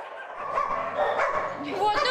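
Caged shelter dogs barking and yelping, building up after a brief lull at the start, with short pitched calls near the end.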